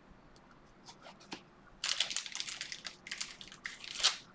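Clear plastic card-pack wrapping being handled and torn open, crinkling and crackling in quick bursts from about two seconds in, after a nearly quiet start with a few faint clicks.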